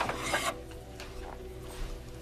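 Scraping and rubbing of small objects being handled on a dresser, loudest in the first half-second, followed by a few light clicks. Soft sustained music tones run underneath.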